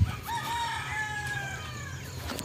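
A rooster crowing once: a short rising note, then one long drawn-out call that falls slowly in pitch for about a second and a half. A low thump right at the start.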